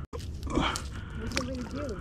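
Handling noise as fishing line and anchor rope are worked at the boat's side: scattered clicks and knocks, with a short low murmur of a voice about one and a half seconds in.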